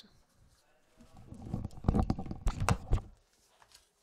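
A cluster of low rumbling thumps and several sharp knocks, starting about a second in and lasting about two seconds.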